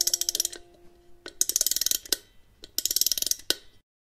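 Three bursts of rapid mechanical clicking, each about half a second long, over the fading tail of a held musical chord.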